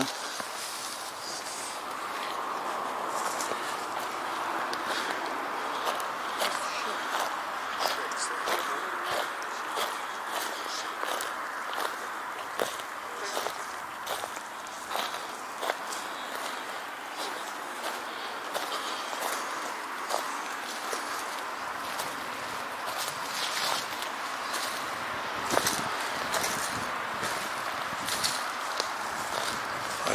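Footsteps walking over grass and wood-chip mulch, irregular and uneven, over a steady hiss that sets in about two seconds in.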